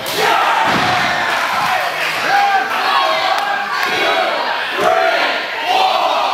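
A small crowd of wrestling fans yelling and shouting over one another in a gym hall, many voices at once with no let-up.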